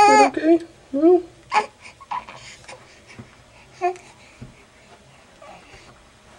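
Young baby cooing and babbling in short, high-pitched sounds, several close together in the first two seconds, then one about four seconds in and a few faint ones after.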